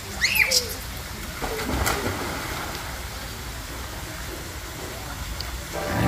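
Children riding down a water slide: a short high squeal as they start, then a splash into the pool about a second and a half to two seconds in, over steady outdoor background noise.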